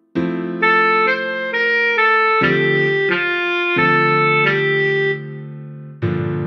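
A tenor saxophone plays a slow line of short stepping notes over piano chords, the tune played at half speed. The chords are struck just after the start, a little before the middle and again near four seconds, and the sound fades away in the last second.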